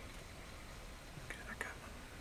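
Hushed human whispering, a few short breathy phrases about a second and a half in, over a steady low rumble.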